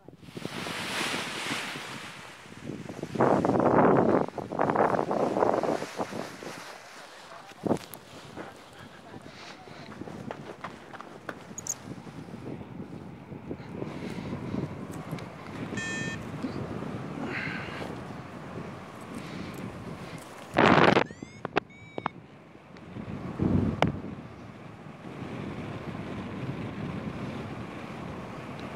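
Wind buffeting a camera microphone during a paraglider launch and flight, in uneven gusts with loud rushes a few seconds in and again about three-quarters through. A short tone sounds near the middle.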